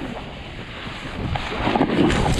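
Wind buffeting the microphone of a body-worn action camera, with a snowboard sliding and scraping over snow as the rider goes downhill. The rushing gets louder and rougher near the end.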